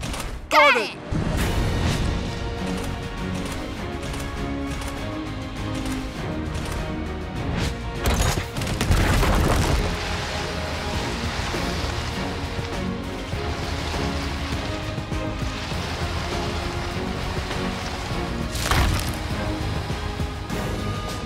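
Animated-film action soundtrack: music over a steady low rumble of giant snowballs rolling, with crashing and wood-splintering effects as trees are knocked down. The loudest crash comes about eight to ten seconds in, and a shorter one near the end.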